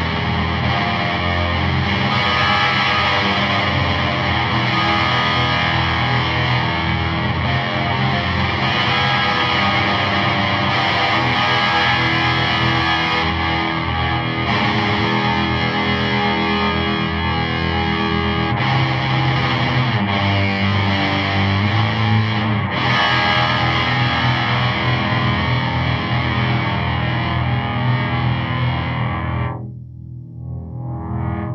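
Electric guitar playing big chords through the EarthQuaker voice of an EarthQuaker Devices × Death By Audio Time Shadows pedal, with its filter turned all the way up. The guitar is turned into a square-wave fuzz with a sub-octave, giving a massive sub-octave distortion. It cuts off near the end, leaving a brief fading tail.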